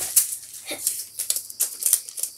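Adhesive tape being pulled off its roll and handled: an irregular run of small crackles and clicks.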